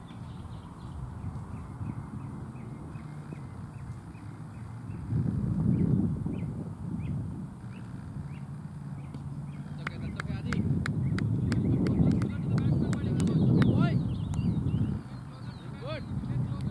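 Open-field match ambience: wind rumbling on the camera microphone, swelling twice, with distant players' voices calling across the ground. A run of short, sharp high chirps comes at about two a second in the second half.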